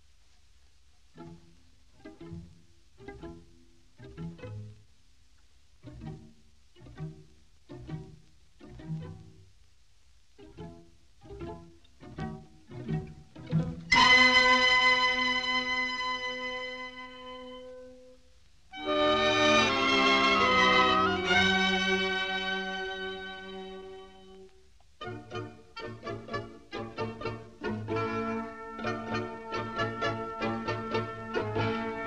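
Orchestral film score led by strings: short notes spaced about a second apart, then two loud held chords that each swell and fade, then a quicker run of short notes near the end.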